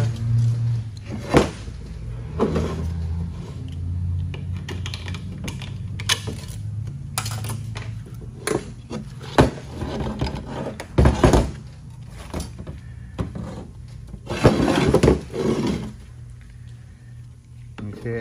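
Metal clutch parts from a 6L90E automatic transmission being handled on a steel bench: the clutch drum clunks down, and the stack of steel and friction clutch plates clinks as it is lifted out of the drum. Irregular knocks and clinks over a steady low hum.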